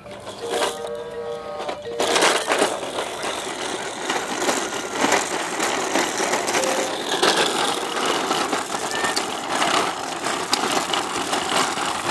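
A plastic toddler push walker rolling on hard plastic wheels over concrete and asphalt, giving a steady, rough rattling noise. A short electronic tone from the toy comes just before it starts rolling.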